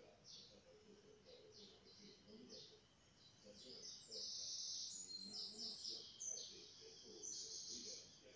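Small birds chirping, the chirps coming thick and fast from about four seconds in.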